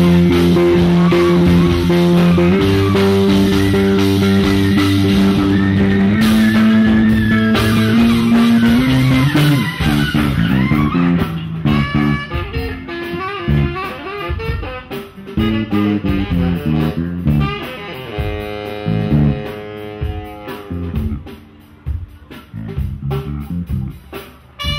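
Live band music led by an electric bass guitar, which holds long, sustained low notes for the first ten seconds or so. After that the band drops into shorter, choppier phrases at a lower level, with tenor saxophone in the mix.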